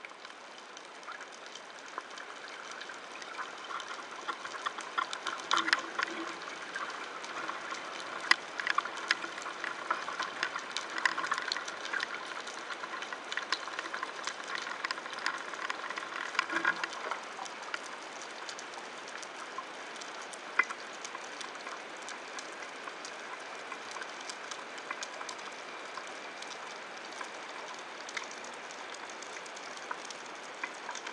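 Underwater sound through a diving camera: a steady hiss with many sharp clicks and crackles, busiest and loudest in the first half.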